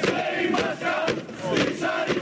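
Crowd of protesting miners chanting and shouting together, with several sharp bangs struck among the voices at roughly half-second intervals.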